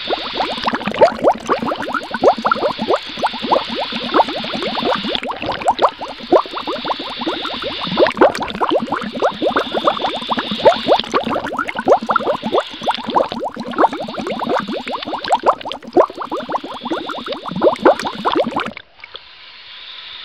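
Hot-spring waterfall pouring and splashing close by, a dense, loud spray of water hitting the pool. It cuts off suddenly near the end.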